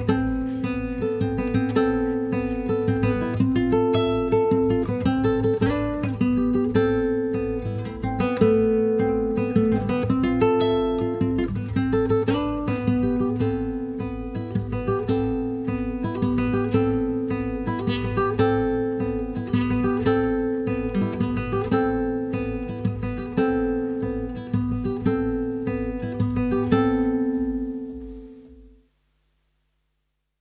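Instrumental close of a song: a plucked guitar playing over sustained notes and a steady low bass pulse, the music fading out near the end.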